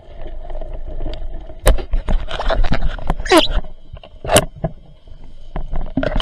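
Muffled underwater sound heard through a camera housing: a low steady hum with several sharp knocks, and a short sliding squeal about halfway through.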